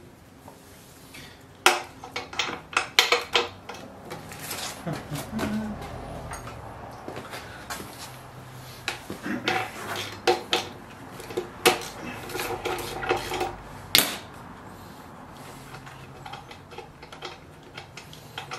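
Metal hand tools clinking and rattling in irregular bursts: a socket wrench being fitted and worked on the spark plug of a seized two-stroke leaf blower.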